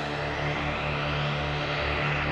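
Dramatic electronic background score: a sustained low drone under a swelling whoosh that builds steadily in loudness.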